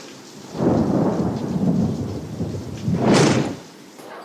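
Thunderstorm sound effect in a hurricane-preparedness radio ad: thunder rumbling over rain, swelling about half a second in, with a sharper crack of thunder about three seconds in before it fades.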